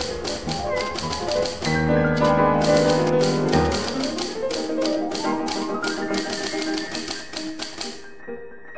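Typewriter key clicks, about five or six a second with a short pause partway through, over background music with held tones.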